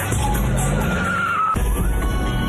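A car engine revving up, its pitch rising steadily, with tyres squealing, over the song's music. The car sound cuts off abruptly about one and a half seconds in.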